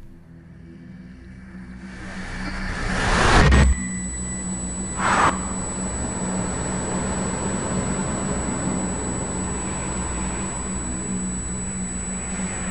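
A sound-design whoosh swells for about three and a half seconds and cuts off abruptly, with a short swish about five seconds in. After that comes a steady city-traffic din with a low hum underneath.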